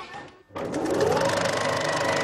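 Film projector running with a fast, even mechanical clatter that starts suddenly about half a second in.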